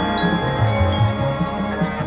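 Marching band music: chimes and mallet percussion ringing with long sustained tones over low notes that change every half second or so.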